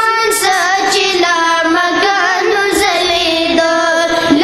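A Pashto naat sung in a high voice with no instruments: long held notes that waver and bend in pitch, with melismatic ornaments.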